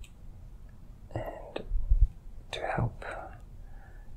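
A man under hypnosis speaking in a soft, breathy whisper, two short broken phrases, with a low thump about two seconds in.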